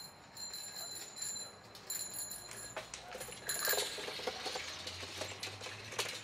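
High, bell-like ringing in a quick run of short bursts, stopping a little before four seconds in, followed by a brief rustle and clatter.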